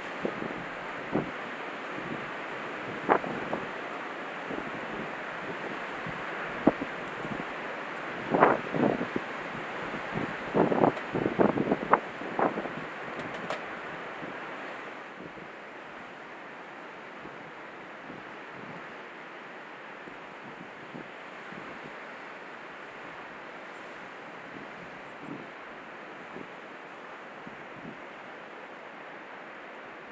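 Wind buffeting the microphone over the steady wash of surf from a rough sea. Sharp gusts hit the microphone several times in the first half, clustered around the middle, then the sound settles to a quieter, even rush of wind and waves.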